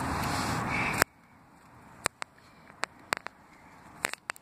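Rubbing and rustling on a handheld phone's microphone that cuts off suddenly about a second in, followed by a few faint scattered clicks and ticks.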